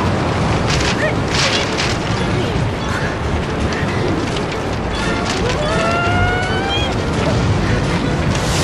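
Strong rushing wind sound effect, a loud gusting roar with low rumble, with music under it. A rising pitched sound comes in about five and a half seconds in and climbs for over a second.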